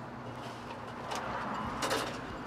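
Mail being pulled from a metal wall-mounted mailbox: paper rustling, with a faint click just past a second in and a sharper click near the end, over a steady low background hum.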